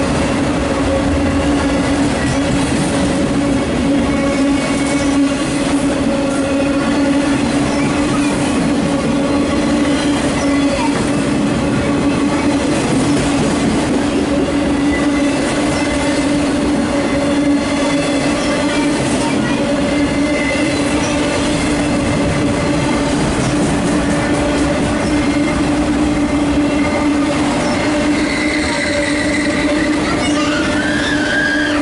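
Loaded autorack freight cars rolling steadily past at close range: continuous wheel-and-rail rumble and clatter with a steady droning tone underneath, unbroken and even in level throughout.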